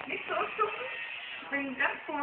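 Two short vocal sounds from a person, about a second and a half apart, with a quieter gap between them.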